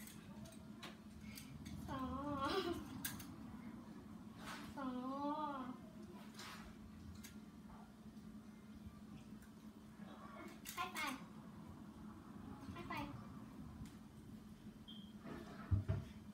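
A child's high, wavering wordless cooing, twice in the first half, with a few soft taps later and a faint steady hum underneath.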